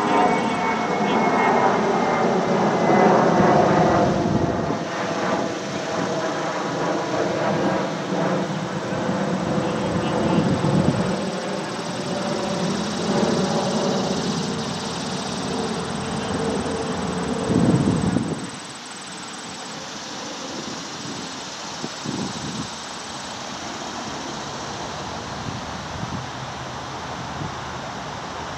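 A large engine passing by, a drone that slowly falls in pitch and fades out about eighteen seconds in, leaving steady outdoor noise.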